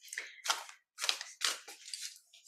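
A deck of oracle cards being shuffled by hand: a run of about five short papery swishes, roughly two a second.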